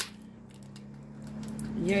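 A single sharp knock as something is set down on a workbench, then a faint steady low hum under quiet handling. A woman's voice starts near the end.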